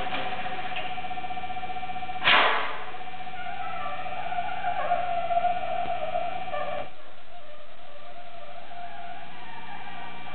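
Free-improvised electroacoustic music from a trio of laptop electronics, oboe and saxophone: a steady layered drone, cut by a sudden loud burst of noise about two seconds in, then a wavering pitched line. Near seven seconds the lower part of the drone drops out and a thinner, quieter drone carries on.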